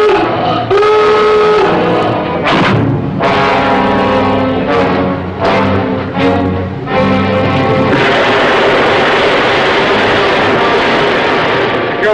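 A submarine's diving-alarm klaxon gives one honking blast, about a second long, with a rising start, near the beginning. Music with repeated heavy hits follows. After about eight seconds it gives way to a steady loud rushing noise.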